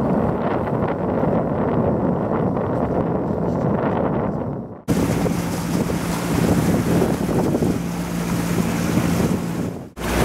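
Wind buffeting the microphone over the rush of sea water aboard a sailing yacht under way. About halfway through the sound cuts off sharply and resumes with a faint steady hum under the wind and water.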